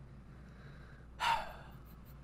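A single short, sharp breath from a man about a second in, over a faint steady low hum.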